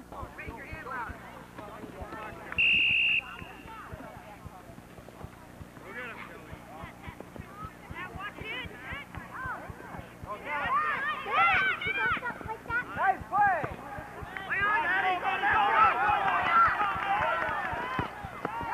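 A referee's whistle gives one short, steady blast about three seconds in. From about ten seconds on, high voices of players and onlookers call and shout across the field, busiest near the end, over a low steady hum.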